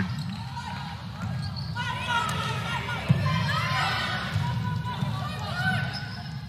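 Indoor volleyball rally: sneakers squeak on the court and the ball is hit once, sharply, about three seconds in, over crowd noise and players' voices.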